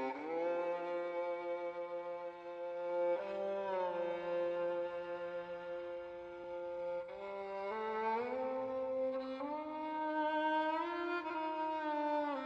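Slow orchestral string music: long held chords that change every few seconds, sliding between notes at each change.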